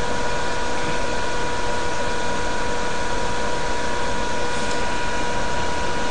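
Steady background hum and hiss with a few constant high tones, unchanging throughout.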